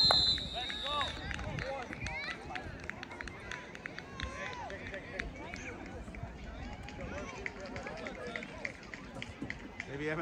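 A referee's whistle blows one blast of about a second at the start, the loudest sound here. Then comes scattered shouting and chatter of players and spectators around the field, carried from a distance.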